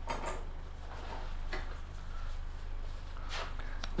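Light metallic clinks and knocks, a few scattered ones, as a bare motorcycle frame is handled and jacked up on a lift table, over a steady low hum.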